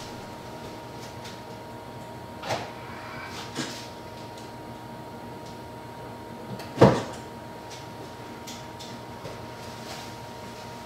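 A sharp clack about seven seconds in as the charging connector is plugged into a Tesla Model 3's charge port, with a couple of softer clicks before it. Under it runs a faint steady whine and hum from the Model Y in the background.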